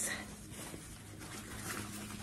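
Faint rustling of cloth as a doll's cotton dress is handled and lifted from a pile of doll clothes.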